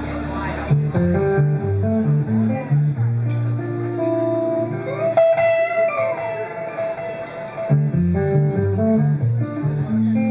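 Live instrumental rock from a trio: a Flying V electric guitar plays a lead line with a bent note around the middle, over a moving bass line and drums. A held low note gives way to busy playing within the first second.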